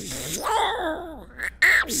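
A man doing a Donald Duck impression: a raspy, duck-like voice lasting about a second and a half, followed by ordinary speech near the end.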